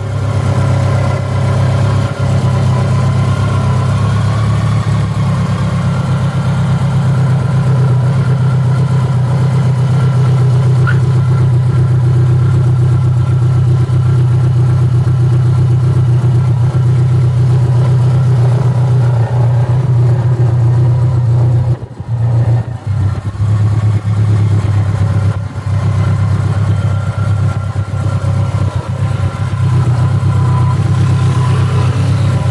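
BMW K1200LT's inline-four engine idling steadily, with the sound dipping briefly about two-thirds of the way through.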